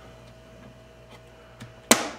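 Handheld hand-cranked can opener being fitted to a can: a few faint metal ticks, then one sharp, loud click near the end as the handles are squeezed and the cutting wheel punches into the lid.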